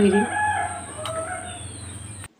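A bird calling in two drawn-out notes, the second lower than the first, fainter than the woman's voice that ends just at the start. A steady hum runs underneath.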